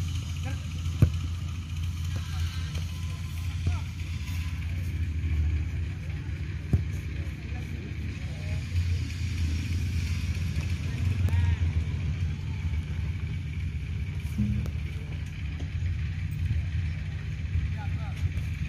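Open-air sound of an amateur football match: faint distant voices and shouts over a low, steady rumble. Two sharp knocks stand out, one about a second in and one near seven seconds.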